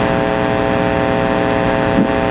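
Steady buzz over a hiss, loud and unchanging, of the kind made by electrical interference in the audio chain.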